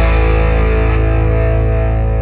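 A rock band's final chord ringing out on distorted electric guitar over a deep sustained bass note, slowly fading, the top end dying away first.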